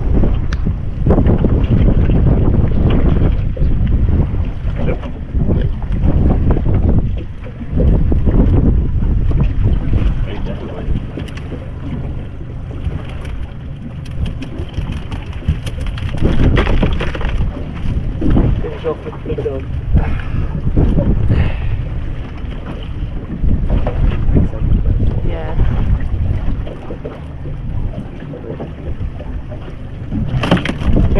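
Wind buffeting the microphone in uneven gusts, a loud low rumble, with scattered clicks and rattles from a wire-mesh crab pot being handled on the boat deck.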